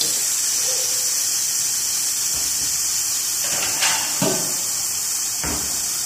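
Steady sizzling hiss of a folded chicken-and-cheese pancake frying in a nonstick pan, left on the heat for the cheese to melt.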